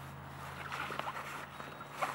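Faint rustling of a fabric drawstring bag being rummaged through by hand, with a few light clicks, over a steady low hum.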